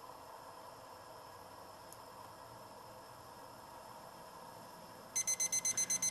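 Digital cooking thermometer beeping rapidly, starting about five seconds in, as its reading reaches 212°F: the alarm that the water has come to the boil. Before it, only a faint steady hiss.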